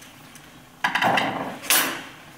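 Stainless steel flue pipe parts knocking and scraping together as a T-piece with its coupling is handled and lifted: a clunk with a short rattle under a second in, then a sharper metallic clatter near the end.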